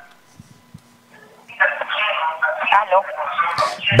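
Thin, narrow-band voice coming in over a telephone line about a second and a half in, after a brief hush with a faint hum on the line. The caller's radio is feeding back into the call loud enough to make talking impossible.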